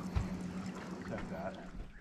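Quiet river water lapping against a boat hull, under a faint steady low hum, with one soft click about a quarter second in.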